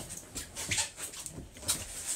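A boat's cabin door being opened by its handle: a string of short clicks, knocks and rubbing noises.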